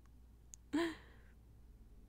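A woman's short breathy sigh with a brief voiced edge, about three-quarters of a second in, just after a faint small click.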